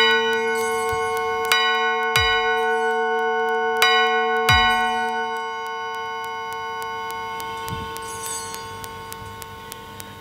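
Altar bell rung at the elevation of the consecrated host. Four strikes come in two pairs, each ringing on with a long sustained tone that slowly fades after the last strike.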